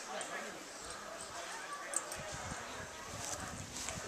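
Indistinct voices of people talking in the background, with a sharp click about two seconds in and a few low thumps after it.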